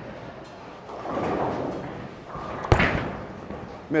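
A Storm Night Road bowling ball laid down onto the lane with one sharp thud a little under three seconds in, then rolling away down the lane.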